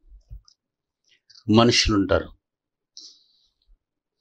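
A man speaks one short phrase into a close microphone about one and a half seconds in, with a few faint mouth clicks before it and a short breath-like hiss near the end.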